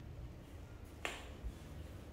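A single sharp click about a second in, as a piece of bleached coral rock is handled and lifted, over faint low handling rumble.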